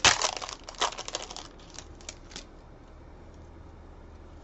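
Trading-card pack wrapper being torn open and crinkled by hand: a burst of crackling through the first second and a half, a few more crinkles around two seconds in, then it stops.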